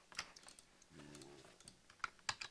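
A few faint, scattered computer keyboard clicks.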